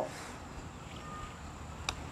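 A single short, sharp click of a putter face striking a golf ball near the end, over quiet outdoor background.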